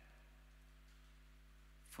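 Near silence: a pause in speech with only a faint, steady low hum; a man's voice starts again right at the end.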